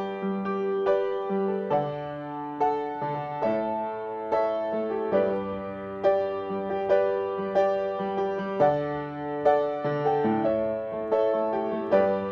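Upright piano played by a young student: a steady tune of struck notes, about two a second, over lower bass notes that change every second or two.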